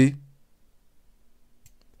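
A few faint computer mouse clicks, spaced out in the second half.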